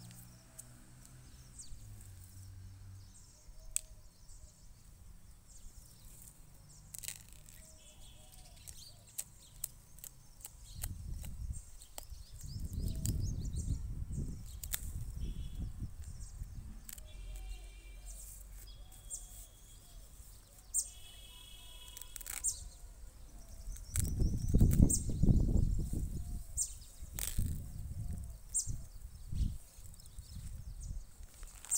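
Polythene nursery bag of a potted sapling crackling and rustling in short clicks as it is slit with a blade and worked off the root ball. Two stretches of low rumble come through, the louder one near the end.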